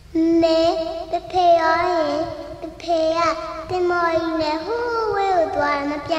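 A woman singing a Burmese song in a high voice, with long held notes and vibrato. The singing begins just at the start after silence.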